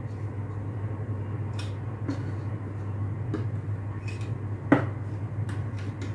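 Light clinks and knocks of a glass measuring cup against a glass flour jar and its lid as flour is scooped out, a few scattered strikes with the sharpest about three-quarters of the way through, over a steady low hum.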